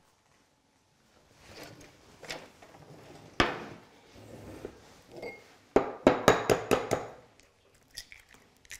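An egg being cracked: one sharp knock, then a quick run of sharp taps of the egg against the rim of a small glass bowl before the shell is pulled open.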